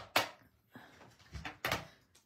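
A few sharp plastic clicks and knocks from a mini manual die-cutting and embossing machine being set up, as its platform flaps are unfolded and plates are laid on it. One click comes just after the start and a quick cluster about one and a half seconds in.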